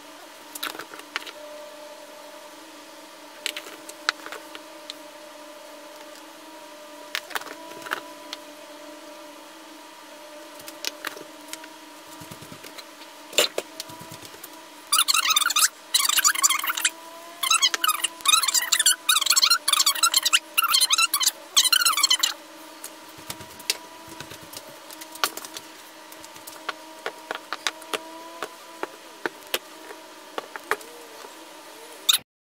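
Scattered light clicks and taps of a dye spoon against jars and a cup as powdered dye is sprinkled onto a tied shirt, over a steady hum. About fifteen seconds in, a loud scratchy rustling starts and runs for about seven seconds.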